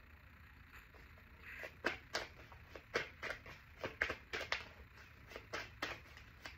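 A deck of tarot cards being shuffled by hand: a run of short, crisp card snaps, two or three a second, starting about two seconds in.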